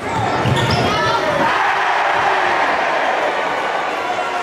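Steady crowd noise filling a gymnasium during a basketball game, with a few short sneaker squeaks on the hardwood court about a second in.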